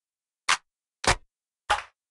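Short sampled percussion hits played from a Fruity Loops (FL Studio) sequence: three sharp, evenly spaced hits about 0.6 s apart, starting about half a second in, with nothing in between.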